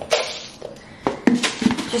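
Dry rolled oats poured from a metal measuring cup into a plastic cup, a short rustling pour, then several sharp clicks and knocks in the second half as the measuring cup goes back into the cardboard oat canister to scoop.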